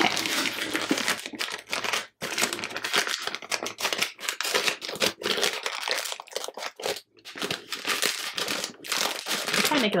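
Metallic foil gift-wrapping paper crinkling and tearing as a wrapped present is pulled open by hand, in an irregular, continuous rustle with brief breaks about two and seven seconds in.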